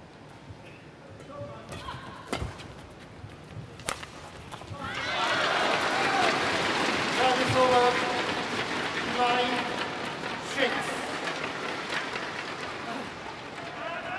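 Badminton racket strings striking the shuttlecock, with sharp hits about a second and a half apart during a rally. About five seconds in, an arena crowd breaks into loud cheering and applause with scattered shouts, dying down slowly, as the point is won.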